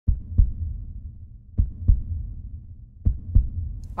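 A slow heartbeat sound, three double thumps, one about every one and a half seconds, over a low steady rumble.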